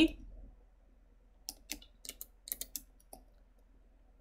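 A run of light computer keyboard and mouse clicks, about ten in small clusters over a couple of seconds, as Ctrl-C and Ctrl-V are pressed to copy and paste.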